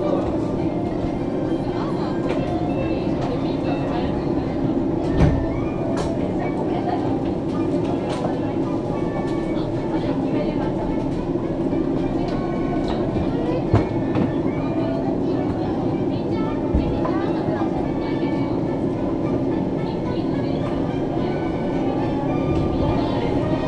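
Inside a Disney Resort Line monorail car standing at a station: a steady, even hum from the car's equipment, with faint voices and a few short thuds. Near the end the train begins to pull out.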